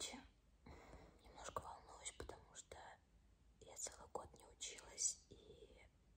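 Only speech: a woman whispering quietly close to the microphone, in broken phrases.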